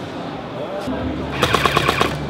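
Rapid burst of automatic gunfire, about a dozen shots a second, starting about one and a half seconds in.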